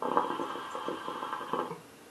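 Hookah being drawn on through its hose: the water in the base bubbles, with a steady airy tone, for nearly two seconds, then the draw stops suddenly.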